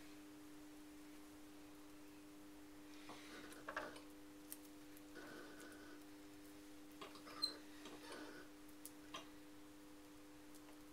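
Faint scattered soft clicks, squelches and rustles of wet hands pinching and pressing soft throwing clay, with one brief high squeak about seven seconds in, over a steady low hum.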